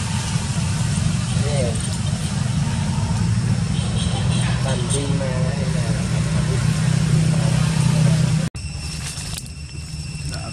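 A motor vehicle engine idling steadily nearby, with people talking faintly in the background. About eight and a half seconds in it cuts off abruptly, giving way to quieter surroundings with a few steady high tones.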